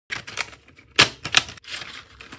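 Plastic marker pens clicking and clattering as they are set down on a paper-covered table: a quick run of sharp clacks, the loudest about a second in, then a short rustle.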